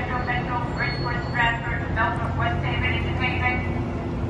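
A woman's voice talking over the steady low hum of a Kawasaki M8 electric train standing at the platform.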